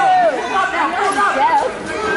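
Crowd chatter: many voices talking over one another in a gym, with no single voice clear enough to be transcribed.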